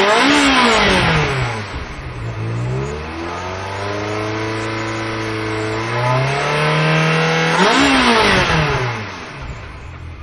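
Ferrari V8 engine revving. There is a quick throttle blip about half a second in, the revs falling away over the next second or so, then climbing and holding. A second sharp blip comes near eight seconds, rising and dropping quickly before settling lower.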